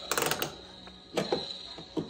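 A quick burst of rapid plastic clicking, like a ratchet, as a toy play kitchen is handled, followed by a few softer clicks and a sharp click near the end.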